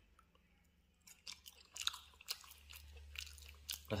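A person chewing a mouthful of firm, not mushy elai (Durio kutejensis) fruit flesh, with soft irregular wet mouth clicks and smacks starting about a second in.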